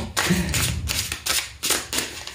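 Tarot cards being shuffled by hand: a rapid, irregular run of short papery slaps and flicks of the cards against one another.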